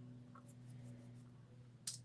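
Quiet handling of small painted wooden cutout letters on a tabletop: faint taps and rubs, then a sharper click near the end as a piece is set down or picked up, over a steady low hum.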